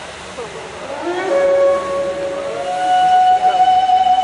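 Show music: after a short gliding swell over a steady hiss, a held tone comes in about a second in and is then replaced by a higher held note near three seconds, growing louder.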